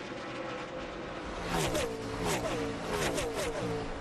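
A pack of NASCAR Craftsman Truck Series V8 race trucks running at full speed. From about one and a half seconds in, several pass close by one after another, each engine note dropping in pitch as it goes by.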